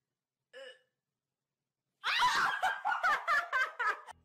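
A woman laughing: a burst of rapid, high laughs starting about halfway through, after a short faint vocal sound about half a second in.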